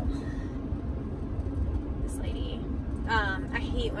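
Steady low road and engine rumble heard inside a moving van's cab. A woman's voice briefly resumes near the end.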